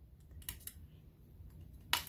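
A few light clicks and taps from a tissue blade slicing thin pieces off a polymer clay cane, its edge meeting the cutting mat; the loudest tap comes near the end.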